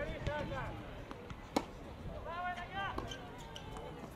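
Football players shouting short calls across the pitch, with one sharp thud of a football being kicked about one and a half seconds in, and a few fainter knocks.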